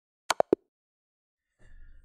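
Online chess site's move sound effects: three quick, sharp wooden-sounding clicks within about a quarter of a second, as the opponent's queen move delivers checkmate and the game ends.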